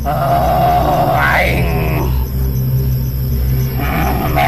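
A man in a trance makes animal-like vocal sounds: a long pitched cry that rises sharply about a second and a half in, then lower, weaker sounds. The show presents him as possessed by a wild creature spirit. A low steady drone runs underneath.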